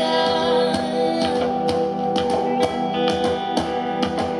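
Live band music: a woman singing over held instrumental notes, with crisp taps a couple of times a second from a hand-held rectangular frame drum struck with a stick.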